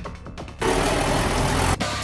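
Trailer sound effect: a burst of steady rushing noise, about a second long, that cuts off suddenly, then music with a heavy bass comes in near the end.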